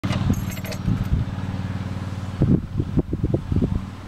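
A car engine idling steadily, with a brief metallic jingle in the first second and a person laughing from about two and a half seconds in.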